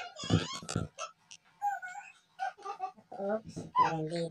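A person's voice in short broken bits and vocal sounds not picked up as words, ending in a drawn-out voiced sound. A few heavy thumps come in the first second, typical of a phone camera being handled.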